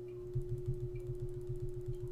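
A rapid, even run of computer mouse clicks, about eight a second, starting about a third of a second in, as the spreadsheet's scroll arrow is clicked over and over.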